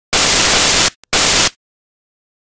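Loud bursts of white-noise static: one lasting nearly a second, a brief click, then a second burst of about half a second. Each starts and stops abruptly.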